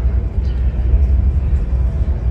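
Outdoor street ambience with a loud, steady low rumble and music playing faintly in the background.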